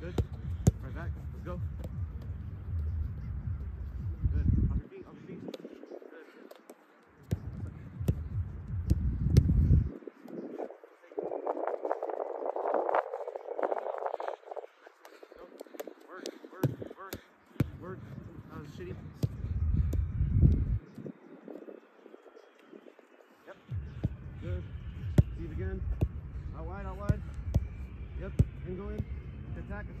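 Soccer balls being passed back and forth on artificial turf: repeated sharp thuds of boot striking ball. A low rumble of wind on the microphone comes and goes in several stretches.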